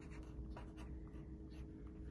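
Pencil scratching on paper in short, faint, irregular strokes as figures are written on a pad.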